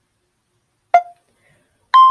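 Screen-recorder countdown beeps: a short beep about a second in, then a higher, longer beep right at the end as the countdown finishes.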